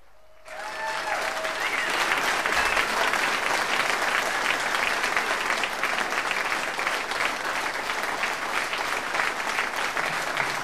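Concert audience applauding, starting suddenly about half a second in and going on steadily.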